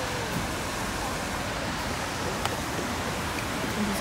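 Steady wind blowing over the phone microphone, an even rushing hiss with a rumbling low end, and a single faint click about two and a half seconds in.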